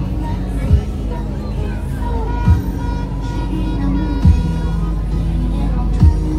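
Music with held notes and a loud, deep bass hit that drops in pitch, repeating about every second and three-quarters, with voices underneath.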